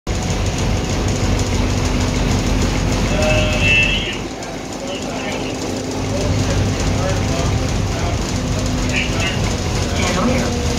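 City bus interior noise: a steady low engine and road rumble with a faint hum, easing about four seconds in and building again a couple of seconds later. A short high-pitched squeal sounds just before the rumble eases.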